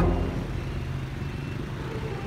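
Night road traffic of cars and motorbikes passing close by on a city street: a steady low engine rumble and tyre noise, loudest right at the start.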